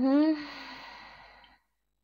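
A woman's short, rising 'mm-hmm' that trails off into a long breathy sigh, fading out about a second and a half in.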